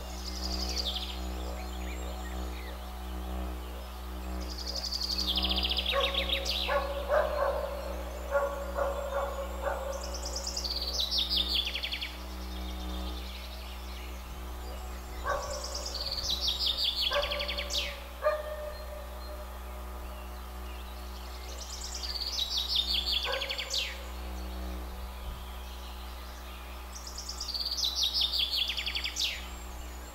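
Didgeridoo played as a steady low drone. Over it, a songbird repeats a fast descending trilled phrase about every five to six seconds.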